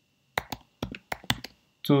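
Typing on a computer keyboard: a quick run of about ten key clicks over about a second, then a short spoken word near the end.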